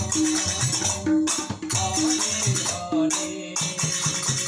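Devotional kirtan music from a group: jingling hand cymbals and drum strokes keeping a steady rhythm, with a short pitched note repeating about once a second.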